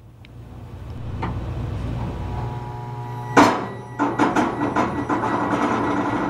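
A steady low machine hum, with a loud knock about three and a half seconds in, followed by a run of lighter clicks and knocks.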